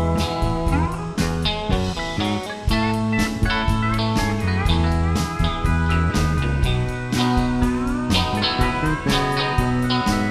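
Live country-rock band playing an instrumental passage: electric guitars with notes sliding up and down in pitch over bass, keyboard and a steady drum beat.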